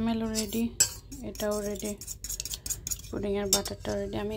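Metal fork clinking and scraping against a stainless steel pot while whisking a liquid pudding mixture: a quick, irregular run of clicks. Held, pitched notes sound behind it.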